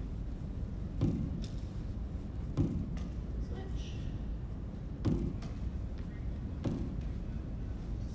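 Lacrosse ball thudding off a cinder-block wall and back into the stick's pocket during one-handed wall ball, a knock every second or two.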